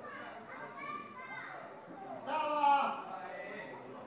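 Spectators' voices near the microphone, talking and calling out, with one loud, drawn-out high-pitched shout a little past halfway.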